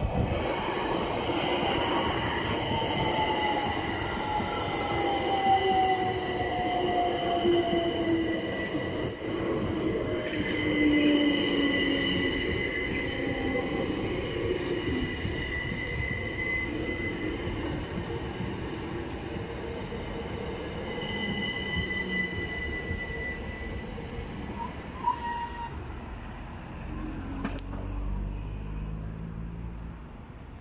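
Southern Class 377 Electrostar electric multiple unit running past while slowing for the station. A whine falls steadily in pitch as it brakes, over a running rumble and a steady high wheel squeal. It fades away near the end.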